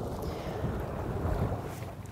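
Wind buffeting the microphone over small waves washing against rocks at the shoreline: a steady rush with low rumble.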